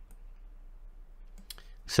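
A few faint computer-mouse clicks over low room hiss: one just after the start and a couple about one and a half seconds in. A man's voice begins near the end.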